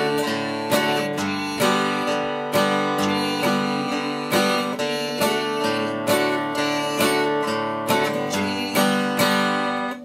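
Acoustic guitar played in an alternating pick-strum pattern: a single bass string picked, then a strum across the chord, over a D chord, changing to G near the end. The pattern is steady and rhythmic.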